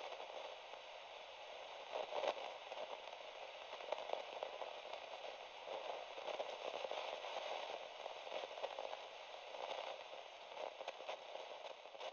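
Faint, steady crackling hiss with many small pops scattered through it, like the surface noise of an old record.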